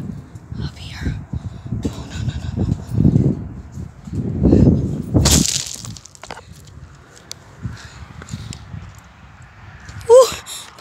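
Shoes crunching on railroad gravel ballast as a person climbs down off a freight car's step, with one loud crunch about five seconds in, then lighter scattered steps on the stones.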